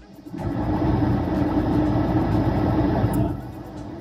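A road vehicle passing close by: a steady rumble that swells up within the first half second and drops away a little after three seconds in.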